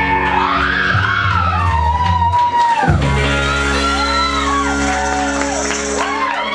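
Live rock band with electric guitars holding sustained chords, with a brief break just under three seconds in and high sliding notes over the top, in a large room.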